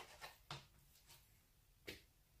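Near silence, with two faint taps of a kitchen knife on a plastic cutting board as raw cod is sliced, one about half a second in and one near the end.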